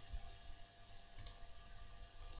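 Faint computer mouse button clicks, a quick pair about a second in, over a faint steady hum.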